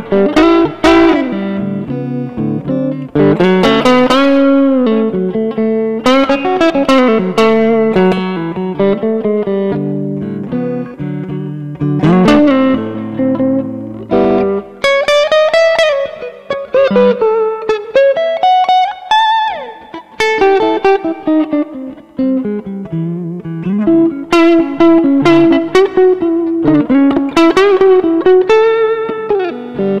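Laurie Williams Riverwood electric guitar played solo: a run of picked single notes and chords, with notes bent up and down in pitch, mostly in the second half.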